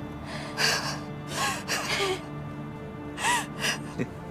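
A woman's crying breaths, several short sobbing gasps, over soft sustained background music.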